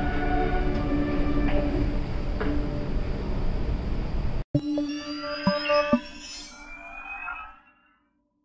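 Station-announcement jingle on an RER NG train: a short melody of sustained chime notes over the train's running rumble. About halfway a cut brings a cleaner recording of chiming notes that ring out and fade away near the end.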